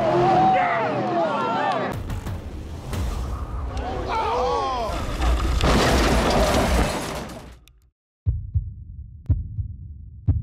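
A street-race car spinning out after its rear tire slips. The driver yells repeatedly over the low engine and road noise, which swells into a loud rushing noise as the car slides off the road, then cuts off about eight seconds in. A few sharp, low thuds follow near the end.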